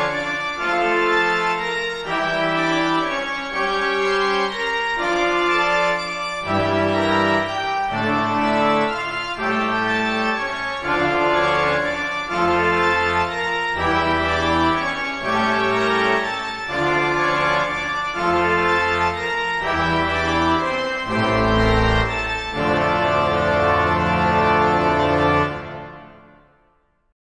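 Sampled pipe organ from the Royal Albert Hall Organ virtual instrument playing a slow chord passage, the chords changing about once a second. Deep pedal bass notes come in about six seconds in, and the passage ends on a long held chord that dies away at the very end.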